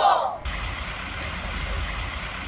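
A woman's voice cuts off about half a second in, giving way to a steady low rumble with hiss over it: a livestock transport semi-truck's diesel engine running, with wind on the microphone.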